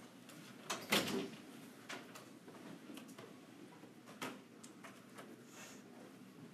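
A few scattered knocks and clatters over faint room noise, the loudest about a second in and a smaller one about four seconds in.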